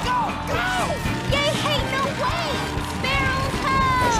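Cartoon soundtrack: background music with short shouts and exclamations from the characters over it.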